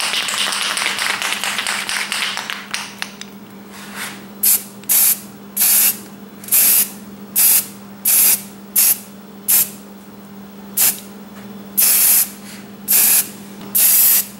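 Aerosol spray-paint can spraying black paint onto masked plastic car trim in about a dozen short, separate bursts from about four seconds in, after a steadier hiss of noise in the first three seconds. A steady low hum runs underneath.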